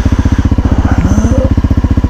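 Dual-sport motorcycle engine idling with an even, rapid putter.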